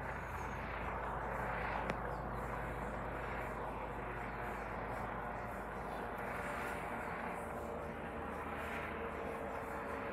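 Eurocopter EC135 P2+ police helicopter flying past overhead, a steady drone from its rotors and twin turbine engines, with a brief click about two seconds in.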